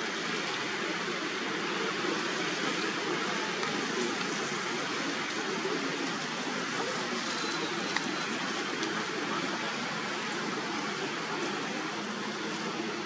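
Steady rushing outdoor background noise, with a single short click about eight seconds in.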